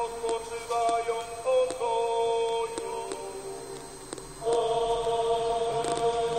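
Chant-like singing in long held notes that step from pitch to pitch. It grows quieter around three seconds in, then comes back louder on a new sustained note.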